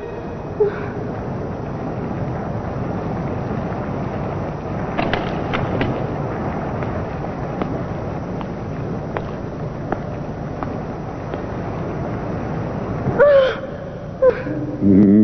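Cartoon ambience of a lava pool: a steady rushing rumble with scattered crackles and pops. A short vocal cry comes near the end.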